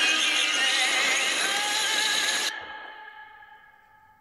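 Dramatic film-trailer music with wavering sung voices that cuts off suddenly about two and a half seconds in, leaving a few held tones that fade away.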